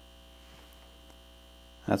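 Steady electrical mains hum with a faint high steady tone above it, and no other distinct sound, until a man's voice starts at the very end.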